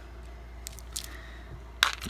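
Faint clicks and taps of small craft pieces and plastic being handled over a clear plastic compartment organizer box, with a sharper click just before the end.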